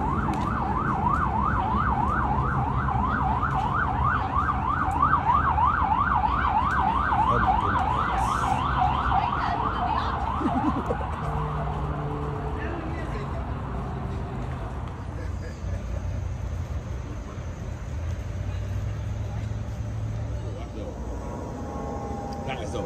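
A siren yelping, a rapid up-and-down wail repeating about three times a second, fading out about ten seconds in.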